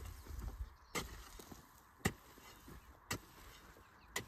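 Hand hoe chopping into clumpy soil and pulling it up onto a raised bed, a sharp strike about once a second, four in all.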